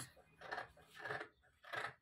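Fabric scissors cutting through two layers of folded fabric, three cutting strokes.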